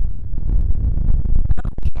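Wind buffeting a phone's microphone: a loud low rumble that rises and falls, with a few knocks near the end.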